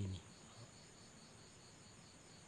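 Faint crickets chirping in the background, a steady high trill that pulses several times a second, after the last word of speech at the very start.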